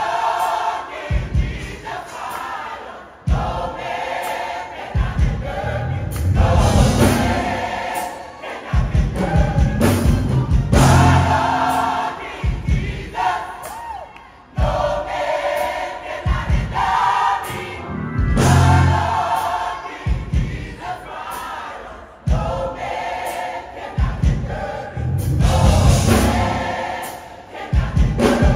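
A large gospel choir singing together, loud, in phrases that break off briefly every few seconds.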